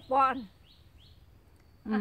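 A woman's voice speaking Thai at the start and again near the end, with a quiet pause between in which a small bird gives a few faint, short rising chirps.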